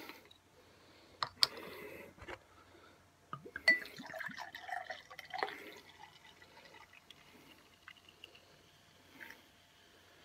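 A glass bottle's twist-off cap is cracked open with a few sharp clicks and a short hiss, then the bottle neck clinks against a pint glass and the carbonated strawberry daiquiri malt drink is poured in, glugging and splashing for a few seconds before trailing off in drips.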